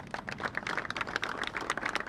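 Applause from a seated audience: many hands clapping irregularly, thickening into steady clapping within the first half second.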